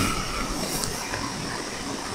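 Steady background noise, an even hiss with a low hum, with no words.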